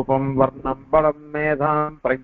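A man's voice intoning a recitation in a chanting cadence: short phrases on held, fairly level pitches, separated by brief breaks.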